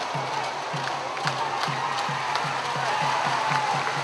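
Stadium cheering section: a drum beating steadily about three times a second, with a sustained wavering melody line over crowd cheering.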